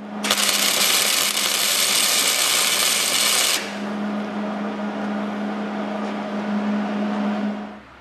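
Angle grinder with a flap disc grinding a small chrome-plated steel flange flat, for about three and a half seconds. Then the sound changes to quieter welding noise over a steady hum as the plate's centre hole is welded shut, stopping just before the end.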